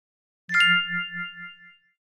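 A single chime struck about half a second in, ringing and fading away over about a second and a half, with a low pulsing hum under its bright tones. It is a cue tone marking the start of the next section of the course audio.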